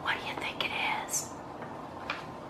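A woman whispering briefly, breathy and without voiced tone, dying away about halfway through.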